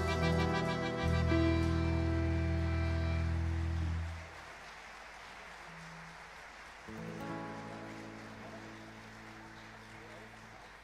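Folk band's closing chord: accordion holding a steady chord over guitar and bass, cutting off abruptly about four seconds in. A second, quieter held chord comes in about seven seconds in and slowly fades away.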